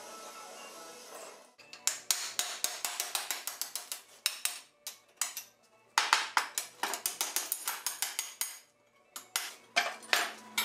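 An oxy-acetylene torch flame hissing steadily for about a second and a half. Then rapid metal clinks and taps, four or five a second in runs with short pauses, as old iron wagon-pole fittings are knocked and pried apart with hand tools.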